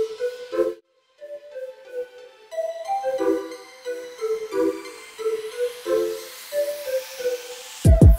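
Electronic background music: a repeating pattern of short synth notes that cuts out briefly about a second in, then returns with a rising sweep building toward the end.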